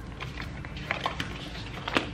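Paper being handled on a desk: light rustling with a few short taps and clicks, the sharpest near the end.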